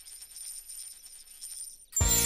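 A faint, high, steady shimmering tone, a cartoon magic sound effect as a wish coin is about to grant a wish.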